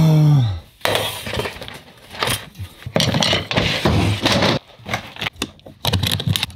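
Aluminium-edged flight case being handled: a string of irregular metallic clacks, knocks and clinks as the case is moved and its metal latches and hardware are worked by hand.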